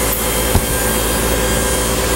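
Steady buzz of electric hair clippers running, with a single short click about half a second in.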